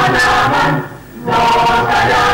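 Mixed choir of women's and men's voices singing sustained chords, with a short break between phrases about a second in.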